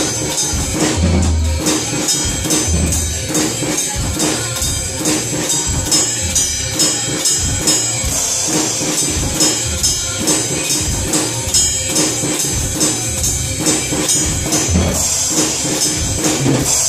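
A PDP drum kit played along with a recorded Hindi film song, keeping a steady, even beat with bright cymbal work over bass-drum pulses.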